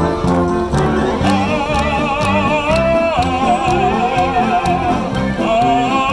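Live brass band music: an oom-pah bass line and steady drum beat under a long, wavering melody note with strong vibrato. The note is held from about a second in until just before the end, when a new note begins.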